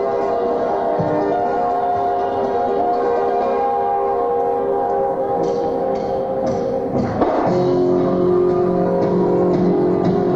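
Live band playing a song's instrumental opening: sustained ringing, bell-like chords, then a sharp hit about seven seconds in as the bass and the rest of the band come in.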